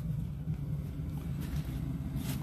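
Steady low rumble of an 80% gas furnace running, its burner and blower sending heat through the ducts.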